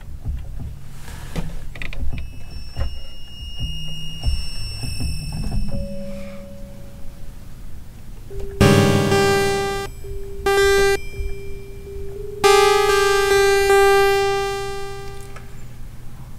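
Waldorf Iridium synthesizer playing FM-synthesis sounds over a low hum: first a few high, thin tones, then from about halfway several loud, bright sustained notes rich in overtones on much the same pitch. The last note is held for about three seconds and fades.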